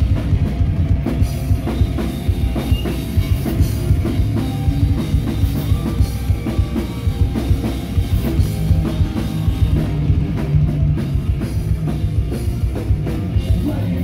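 Live heavy rock band playing an instrumental passage: fast, dense drumming with kick drum and cymbals over electric guitar and bass, at a steady loud level.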